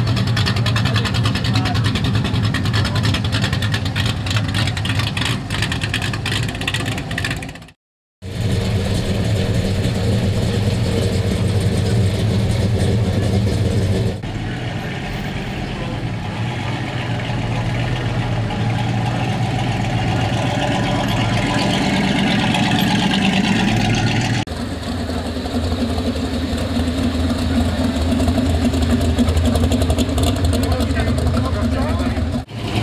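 Engines of classic American cars idling as they roll slowly past one after another, with people talking around them; the sound drops out for a moment about eight seconds in and changes abruptly twice more as one car gives way to the next.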